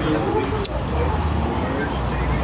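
Indistinct talking over a steady low rumble, which grows stronger about a second in.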